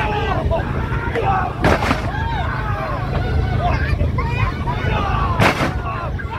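Two short blasts from a hot-air balloon's propane burner, about four seconds apart, over the chatter of crowd voices and a steady low rumble.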